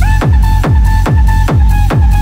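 Loud electronic dance music from a DJ set played over a nightclub sound system: a kick drum about three times a second under a held synth note.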